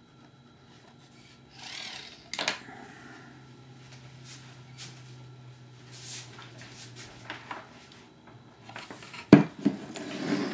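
Hands handling hard plastic model parts on a wooden workbench: rustling, light clicks and taps, with a pencil being set down, then a sharp knock near the end as the fuselage fairing is grasped. A faint steady low hum runs underneath.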